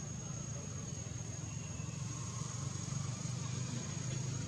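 Steady outdoor background noise: a continuous low rumble with a thin, high steady whine held over it, and no distinct animal calls or knocks.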